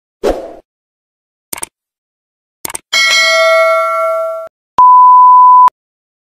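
Intro sound effects: a short thump, two quick clicks, then a bell-like ding that rings for about a second and a half, followed by a loud, steady single-pitch test-tone beep of the kind played with TV colour bars, cut off sharply after just under a second.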